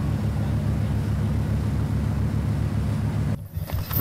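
A dive boat's engine running steadily at cruising speed, a low drone under the hiss of rushing water and wind. Near the end the hiss drops away for a moment while the low drone carries on.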